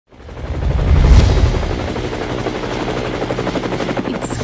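Helicopter rotor chopping steadily, with a deep rumble that swells up about a second in and then holds.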